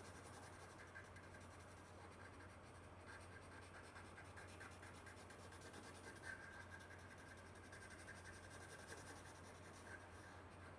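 Faint scratching of a colored pencil on paper in quick repeated strokes as an area is filled in, over a steady low hum.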